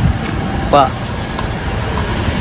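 Perodua Alza's engine running at low revs as the car sets off on a brake test drive, a steady low rumble.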